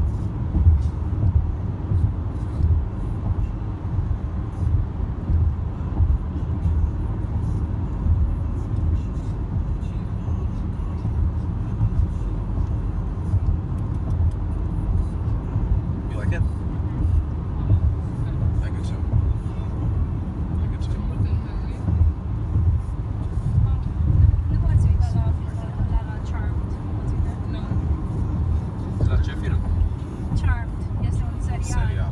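Steady low rumble of road and engine noise heard inside a moving car's cabin.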